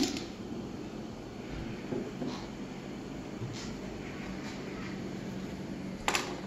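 A steady low hum of room tone, with a few faint soft taps and rustles as hands fit a stiff, rigidized ceramic fiber blanket panel into a steel box frame.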